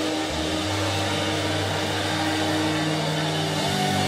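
Steady din of a congregation praying aloud all at once, many voices blurred together, over a low steady held tone.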